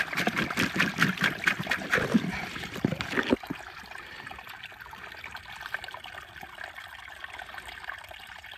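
A hand swishing a freshly dug wapato tuber in a shallow running stream, with quick splashes for the first three seconds or so. After that, only the stream trickles on steadily and more quietly.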